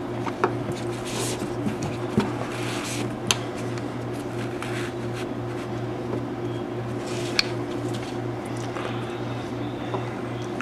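Hands handling a paracord knot on a PVC pipe: faint rustling with a few small clicks and taps, the sharpest a little over three seconds in and again about seven seconds in. A steady low hum runs underneath.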